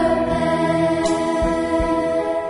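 A school choir of students singing a French song over instrumental backing, holding long notes.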